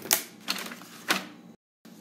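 Three sharp taps and clicks of paper and drawing tools being handled on a desk, over a faint hiss, cut off abruptly near the end.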